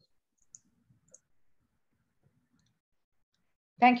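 Near silence with two faint short clicks, about half a second and a second in; a woman starts speaking right at the end.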